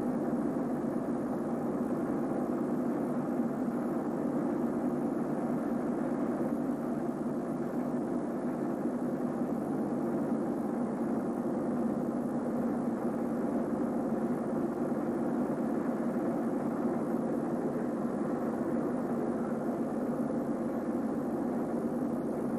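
A steady, even rumbling noise with no distinct events and no change in level.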